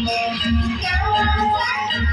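Santali folk dance music: a sung melody over a steady drum beat of about three beats a second.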